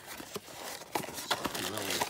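Small cardboard blind box being handled and its end flap pried open: a few short clicks and scrapes of card.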